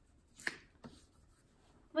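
A single short brushing swish of a fingertip rubbing across drawing paper, smudging the colour, about half a second in, followed by a faint tick.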